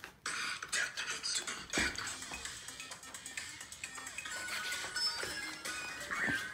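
Music playing, with a single knock about two seconds in.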